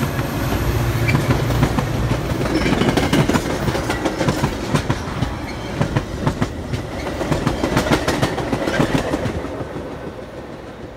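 Metra diesel commuter train passing close by. The locomotive's engine drone is heard for the first couple of seconds, then the bilevel passenger cars' wheels clatter over the rail joints in an irregular run of clicks and knocks. The clatter fades near the end as the train moves away.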